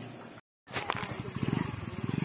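A motorcycle engine idling with a rapid, even low putter, coming in just after a brief dead gap. Before the gap there is only faint kitchen background.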